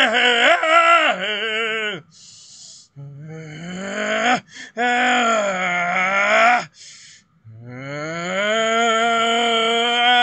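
A man singing loud, wordless improvised phrases, an exercise in letting anger out as song. Four long phrases, the first wavering, the third dipping and rising, the last gliding up to a held note near the end, with short breaths between them.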